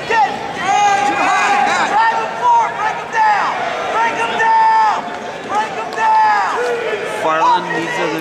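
Spectators shouting at a wrestling bout: loud, high-pitched yells from several voices overlapping, with crowd noise behind.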